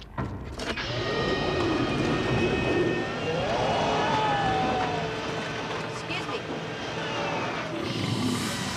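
Garbage truck engine running as the truck pulls away, its pitch rising and then falling around the middle, with a couple of knocks near the start.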